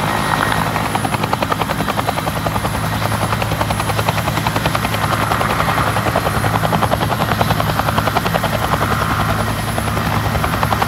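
Bell UH-1D Huey flying low on its landing approach. Its two-bladed main rotor beats rapidly and evenly over the steady hum of its turbine engine.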